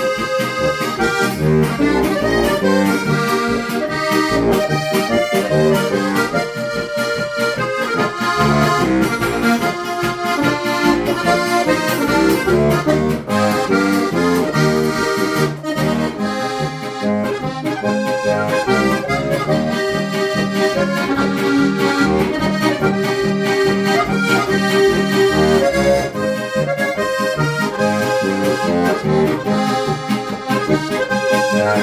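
Lanzinger diatonic button accordion playing a lively folk tune, with melody over a steady, regular bass accompaniment.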